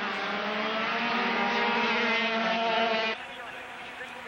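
125cc two-stroke Grand Prix racing motorcycles at full throttle, a close, high-pitched engine note climbing gently in pitch. About three seconds in the sound cuts abruptly to a quieter, more distant drone of the pack.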